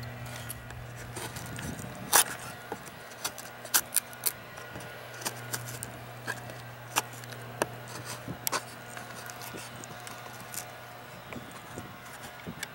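A D2 tool-steel knife blade carving shavings off a wooden board: a dozen or so short, irregularly spaced scraping strokes, the loudest about two seconds in.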